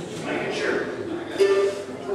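A few loose notes picked on a mandolin between songs, one struck about one and a half seconds in and ringing on, with voices talking underneath.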